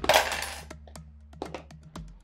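A sudden loud jingling, rattling burst lasting about half a second, over background music with a steady low drone and light ticks.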